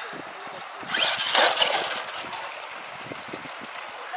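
Traxxas Rustler RC truck driving down off boulders onto a cobblestone bank. A loud burst of motor and tyre noise about a second in fades into a steady hiss.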